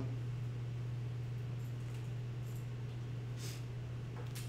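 Steady low electrical hum over faint room noise, with a few faint, brief high ticks.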